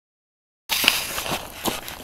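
Dead silence for about the first two-thirds of a second, then footsteps and crunches on creek-bed gravel, with a few sharp clicks over a steady hiss.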